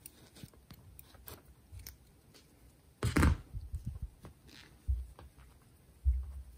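Faint rustling and small clicks of metal forceps pushing polyester fiberfill stuffing under a crocheted yarn piece, with a louder rustle about three seconds in and a low bump near five seconds.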